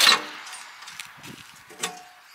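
A sharp metallic clatter right at the start, dying away, then a few faint knocks and rattles as a diamond-plate cover on a fire truck's tailboard is handled.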